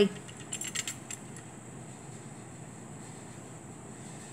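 A few faint, light metallic clicks and rattles in the first second or so as a spring scale and its hook are handled and turned, then only faint room hiss.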